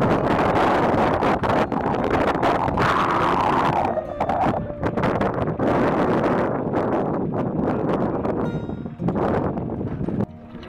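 Wind buffeting the microphone in loud, irregular gusts, easing a little about four seconds in.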